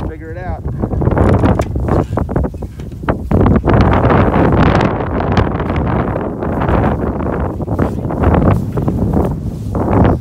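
Wind buffeting the microphone, with a short wavering bleat from the sheep or goat about half a second in. Scattered knocks follow as rams step through the wooden pallet pen.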